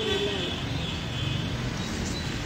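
Motor vehicle engine running amid street traffic: a steady low rumble. A voice trails off at the very start.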